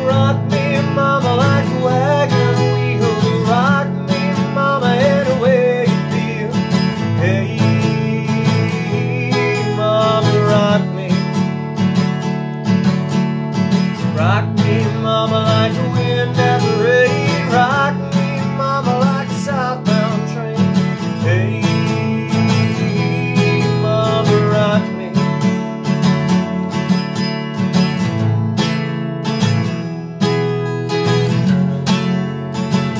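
Steel-string acoustic guitar strummed in a steady country rhythm, with a man singing over it for most of the stretch; the last few seconds are guitar alone.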